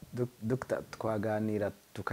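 Speech, starting with a few short clicks in the first second.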